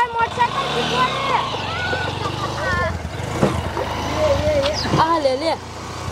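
A motorcycle engine running at low speed as it rolls up, a steady low hum under women's voices calling and talking over it.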